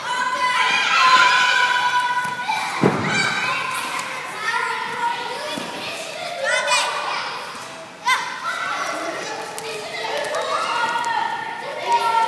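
Children's voices calling and chattering in a large gym hall, over thuds of hands and feet on the floor and mats as they crawl and run. One heavy thump comes about three seconds in, and another about eight seconds in.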